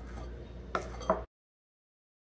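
A metal cookie scoop working thick batter in a glass mixing bowl, with two sharp clicks about a second in over a low hum. The sound then cuts off abruptly to dead silence.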